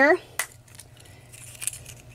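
A small clear plastic prize capsule snapping open with one sharp click about half a second in, then faint handling noise of the plastic in the fingers.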